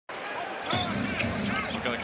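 NBA game court sound: a basketball dribbled on the hardwood and sneakers squeaking in short chirps, over steady arena crowd noise.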